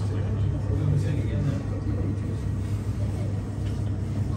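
A steady low mechanical hum, with faint voices of people talking underneath it.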